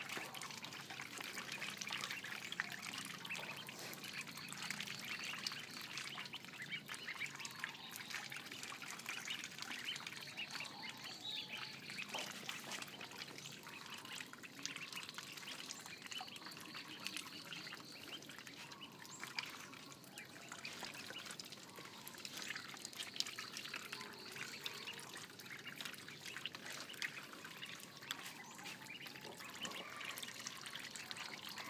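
A group of ducklings peeping continuously, with light splashing as they swim and dabble in shallow water.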